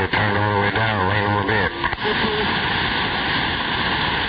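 CB radio receiver on 27.025 MHz playing a garbled, warbling voice transmission, the duck-like sound of mud ducking. It cuts off about two seconds in, leaving steady band static hiss.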